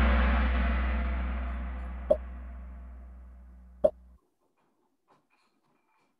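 Kahoot quiz game-start sound effect played through the computer: a deep gong-like hit that dies away slowly and then cuts off suddenly about four seconds in, with two short pops about two and four seconds in.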